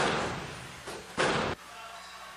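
Gunfire inside a room: a loud shot right at the start, a fainter one just before a second in, then a louder short burst a little after a second that cuts off abruptly.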